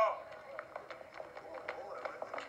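Many shoes clicking and tapping quickly and irregularly on a hard floor, with faint voices underneath, heard through a television speaker.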